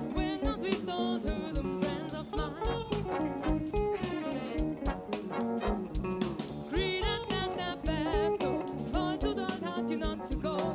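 Live band music: a woman sings with vibrato over a full band with guitar and a steady drum beat.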